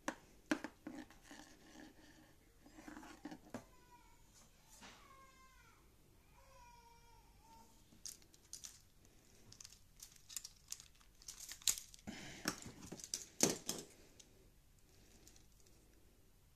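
Plastic LEGO Technic parts clicking and rattling faintly as they are handled, loudest about twelve to fourteen seconds in. Between about four and eight seconds in, a few short pitched calls that bend down in pitch sound in the background.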